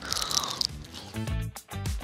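Background music with crunching as a piece of chocolate is bitten and chewed. A short falling tone opens it, then the music pulses in a beat over the second half.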